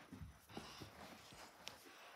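Near silence with a few faint soft thumps of footsteps on carpet, and a small click near the end.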